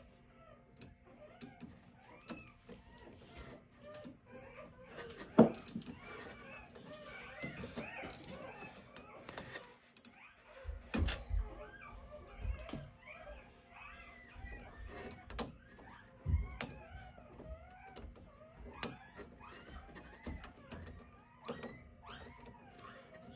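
Many faint, high squeaks of newborn golden retriever puppies, over small clicks and scrapes of a metal pick prying rollers out of an Epson R2400 printer. A sharp knock about five seconds in is the loudest sound, and a few low thuds follow later.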